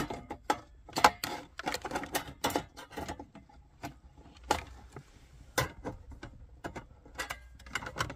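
Flathead screwdriver working the tabs of a metal radio mounting sleeve in a plastic dash kit, locking the sleeve so it can't move. A run of irregular clicks and taps, with a few louder ones spread through.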